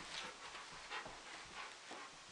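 Faint sounds of an Old English Sheepdog moving about, a few soft, irregular taps of its paws on the rug and floor.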